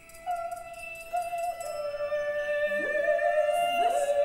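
Contemporary opera music: two high tones held together and growing louder, with sliding glissandi rising into them about three seconds in and again near the end.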